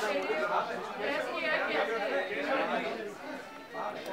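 Overlapping chatter of several people talking at once, with music in the background.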